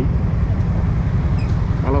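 A motorcycle engine running at low speed with road rumble: a steady, loud low rumble while riding slowly among other motorcycles in city traffic.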